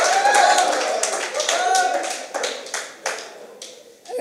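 Audience clapping with some voices calling out. The applause thins to scattered claps and dies away near the end.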